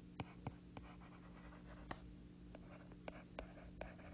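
Faint handwriting on a tablet touchscreen: a series of light, irregular ticks and scratches as the letters are written, over a steady low hum.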